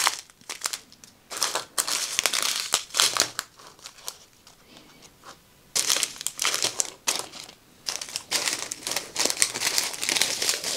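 Strips of small plastic bags of diamond painting drills crinkling as they are handled and shifted, in irregular bursts. There is a lull of about two seconds a little before the middle.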